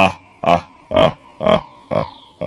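A deep-voiced, theatrical evil laugh, slow separate "ha… ha… ha" syllables at about two a second.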